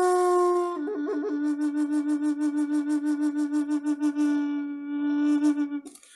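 Wooden Native American-style flute (Ojibwe bibigwan) playing a long held note. About a second in it drops, after a short flourish, to a slightly lower note that pulses about five times a second, and it stops just before the end.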